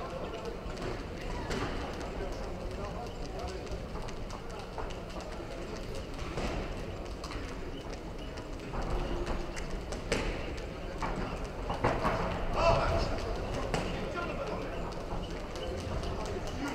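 Boxers' feet stepping and shuffling on the ring canvas, with a few sharper impacts from punches, loudest around ten and twelve seconds in. Indistinct voices of spectators and corners run underneath.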